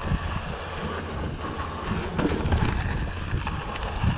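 Wind buffeting a camera microphone over the rumble of mountain bike tyres rolling fast on a dirt trail, with scattered clicks and rattles from the bike over bumps.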